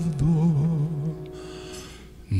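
A man's voice singing a held note with a wide vibrato over a small acoustic band of piano, violin, double bass and electric guitar. The sung note ends a little over a second in, and the band carries on more quietly.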